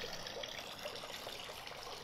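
Faint, steady trickle and splash of thin streams of water falling from a pond waterfall filter onto the pond's surface.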